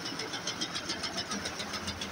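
A multi-needle quilting machine running, its needles stitching fabric and insulation together with a rapid, even clatter.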